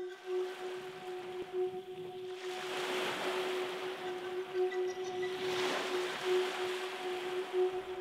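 A sustained musical drone note held steady under the wash of waves on a pebble shore, which swells twice.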